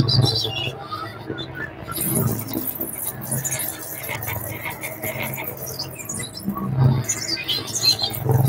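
Live electronic music played on laptops and a hardware controller: low bass pulses recurring every two seconds or so, under scattered high chirping and squeaking synthesized sounds.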